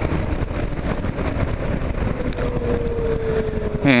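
Kawasaki KLR 650 single-cylinder engine running at road speed, mixed with wind and road noise. A faint whine slowly drops in pitch through the middle.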